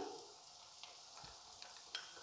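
Faint stirring of a thick spice paste with a metal spoon in a small glass bowl, with a few light ticks of the spoon against the glass.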